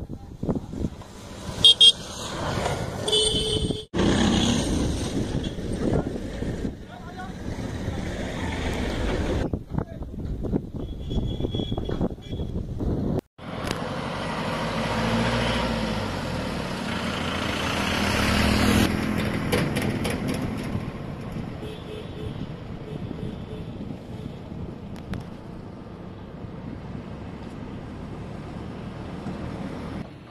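Outdoor sound in several cut-together pieces: in the first half, short horn toots among voices and wind. After a sudden cut about halfway, road traffic runs on a bridge, swelling as a vehicle goes by and then fading to a steady hum.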